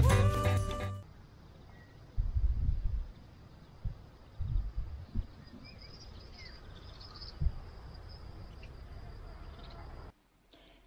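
The intro music ends about a second in. Then outdoor ambience follows: wind buffets the microphone in a few gusts over a faint, steady, high insect buzz, with a few faint bird chirps.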